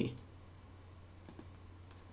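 A few faint computer mouse clicks, grouped about one and a half seconds in, selecting an item from a dropdown list, over a low steady electrical hum.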